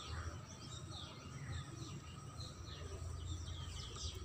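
Faint open-air ambience: small birds chirping now and then in short, falling notes over a steady low background hum.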